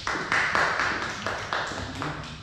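Applause from a small group of listeners clapping, loudest in the first second and tapering off.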